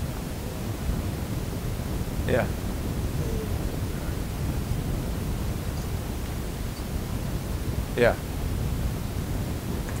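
Steady low room noise, with two short spoken 'yeah's, one about two seconds in and one near the end.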